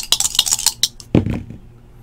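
Two dice rattling and clicking together as they are shaken in cupped hands, then thrown down with a short dull thud about a second in.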